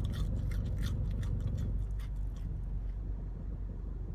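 Low, steady rumble of car road and engine noise inside the cabin of a moving car, with faint scattered clicks in the first couple of seconds.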